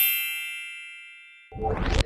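Editing sound effect: a bright, bell-like chime rings out and fades away, then a rising swoosh sweeps up near the end.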